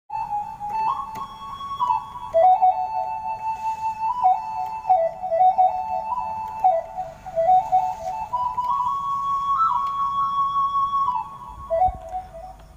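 Yamaha PSR keyboard playing a dangdut suling-style flute lead melody, a single line of stepping notes with hall reverb and delay on it. It ends on a long held high note near the end.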